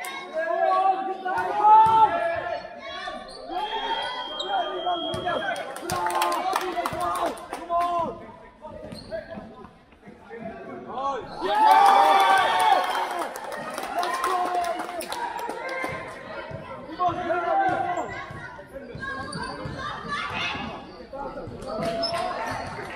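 A basketball bouncing on the hard court floor during play, with players and coaches shouting, the sound echoing in a large sports hall.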